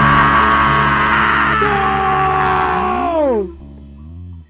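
Hardcore punk band ending a song on a loud, held, distorted chord. About three seconds in, the chord slides down in pitch and drops away, leaving a low amplifier hum.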